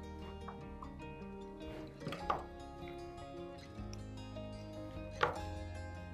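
Background music of sustained notes, broken by two sharp clicks, one a little after two seconds in and one about five seconds in.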